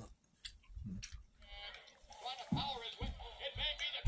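Chewing and mouth clicks, then from about a second and a half in, background music with a wavering voice, like a television playing.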